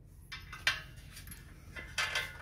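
A few short metallic clinks as the steel sewing-table stand and its screw hardware are handled and fitted together, the sharpest a little under a second in.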